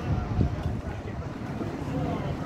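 Wind buffeting an outdoor phone microphone: a low, uneven rumble with faint voices underneath.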